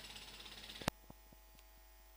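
A single sharp click a little under a second in, followed by two or three much fainter clicks. A faint hiss stops at the click, leaving only a low steady hum.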